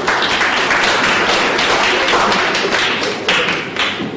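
Audience applauding: many hands clapping in a dense patter that eases off near the end.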